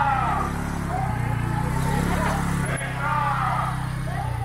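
A small motorcycle engine idling steadily close by, with people's voices calling out over it.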